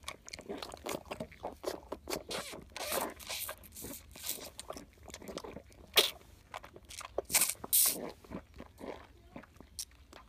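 A foal suckling at its mother's udder: irregular wet sucking, smacking and swallowing sounds, with a few louder smacks past the middle.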